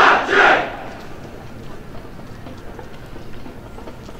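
Marching band members shouting in unison: two short, loud shouts about half a second apart, then only a low street background.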